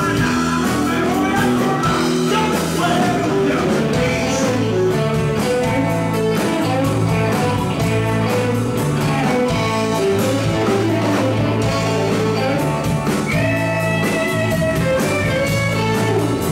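A blues-rock band playing live: electric guitar lines over bass guitar and a drum kit, with one guitar note bent up and held about thirteen seconds in.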